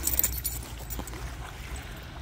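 Outdoor background noise: a steady low rumble with a faint hiss, and some crackling in the first half second.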